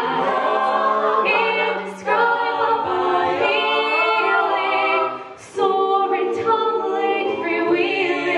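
Mixed-voice a cappella group singing sustained chords into microphones, men's and women's voices together with no instruments. The sound drops briefly twice, about two seconds in and again about five and a half seconds in, before the voices come back in.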